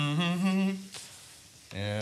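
A man's voice humming a held, wavering note, dying away under a second; after a short pause another hummed note begins near the end.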